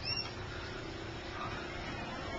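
A single short high chirp right at the start, then faint steady outdoor background noise.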